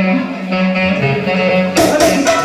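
Live band music: a single long note held steady, then the full band with drums strikes up near the end.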